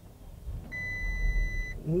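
Bentley Bentayga First Edition's twin-turbo W12 engine starting at the push of the start button, heard from inside the cabin: a low rumble comes up about half a second in. A steady electronic beep, about a second long, sounds over it.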